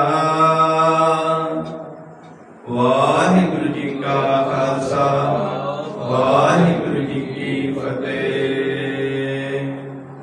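A man's voice chanting Gurbani in long, drawn-out tones, the closing of a Hukamnama reading. The first held tone fades away about two seconds in, and after a short pause a new sustained chanted line starts and runs on, tailing off near the end.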